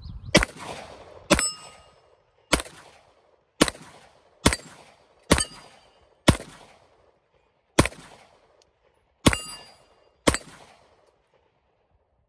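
Walther PPQ semi-automatic pistol fired ten times in slow succession, roughly one shot a second with a couple of longer pauses. A short metallic ring follows a couple of the shots, as steel plate targets are hit.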